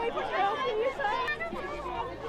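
Several people talking over one another at close range: unclear overlapping chatter from a small crowd.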